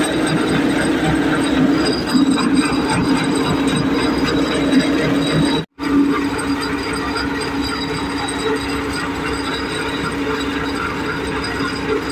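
Tractor-driven groundnut thresher running steadily under load: a constant machine hum with a dense crackling rattle of groundnut plants and pods going through the drum. The sound drops out for an instant near the middle.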